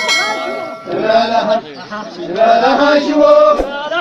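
A group of men chanting together in a traditional Irob hura song. A bright chime sound effect rings out at the start over the voices and fades away within about a second.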